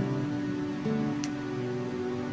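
Playback of a self-made song slowed to 100 BPM, a quiet passage of sustained instrument notes that move to a new chord a little under a second in.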